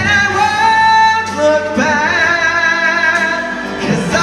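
A solo vocalist singing a ballad live with musical accompaniment, holding long notes with vibrato.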